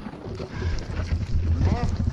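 Low rumble of wind buffeting a helmet-mounted action camera's microphone, starting about a quarter second in and running steadily underneath a faint voice near the end.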